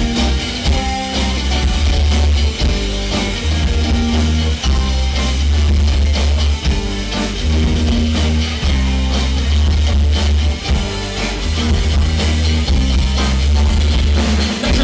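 Live rock band playing an instrumental passage on electric guitars and drum kit, with a heavy bass line.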